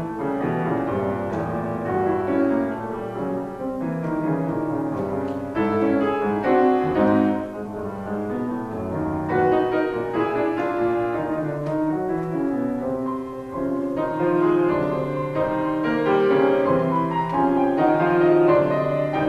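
Solo Yamaha grand piano played live: a contemporary tango-inspired piece of dense, fast-moving notes and chords, its loudness swelling and falling.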